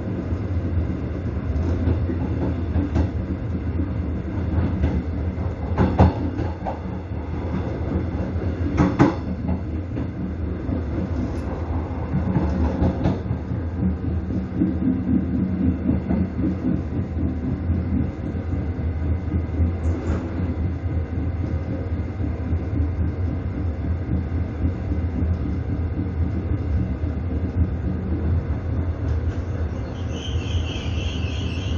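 Train running along the track: a steady rumble of wheels on rail, with a few sharper wheel clacks, the loudest about 6 and 9 seconds in.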